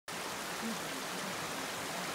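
Muddy floodwater from heavy rain rushing down a flooded street: a steady rushing hiss.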